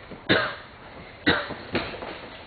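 Short, sharp shouts from martial artists executing a self-defense technique, three in quick succession with the first the loudest.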